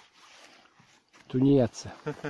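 A man's voice: one short spoken sound with a falling pitch, about a second and a half in, after a near-quiet pause.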